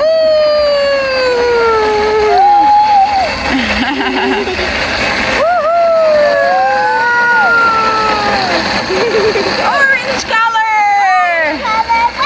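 Countertop blender running steadily, blending chopped fruit with milk and water. Over it a child makes drawn-out wordless vocal sounds that glide down in pitch several times.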